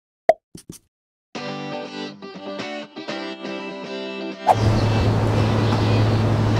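A single cartoon pop sound effect with a few light clicks, then a short stretch of instrumental music. About four and a half seconds in it cuts abruptly to street noise with a steady low hum.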